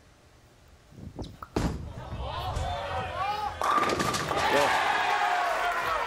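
A bowling ball lands on the lane with a sharp thud about one and a half seconds in and rolls on toward the pins, while the crowd's voices build as it travels.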